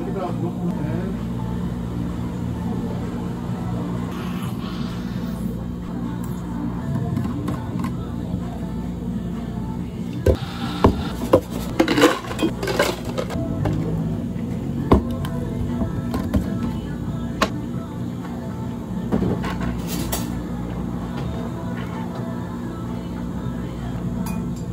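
Drinks being prepared by hand: milk poured into a plastic blender cup, then plastic cups, a bottle and a jug set down and handled, giving several sharp knocks and clicks about halfway through. Under it runs a steady low machine hum.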